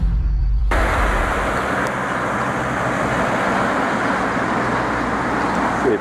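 A deep rumble from the logo intro stops abruptly under a second in. It gives way to a steady hiss of street traffic on a wet road.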